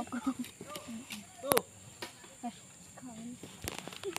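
Scattered, quiet talk from a small group of people, with two sharp knocks, one about a second and a half in and one near the end.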